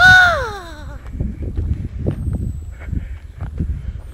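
One loud animal call, under a second long and falling in pitch, right at the start, then quiet outdoor background with a few faint knocks.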